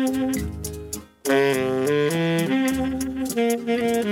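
Live saxophone playing a melody over rhythmic strummed guitar and tambourine. All the instruments break off for a moment about a second in, then resume.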